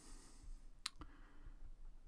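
A single sharp click a little under a second in, with a fainter click just after it, over faint room tone.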